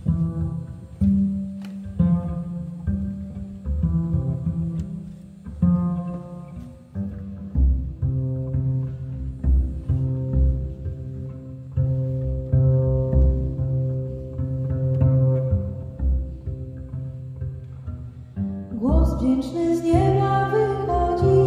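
Upright double bass played pizzicato, unaccompanied: a slow line of separate plucked low notes opening a jazz arrangement. Near the end a woman's singing voice comes in over it.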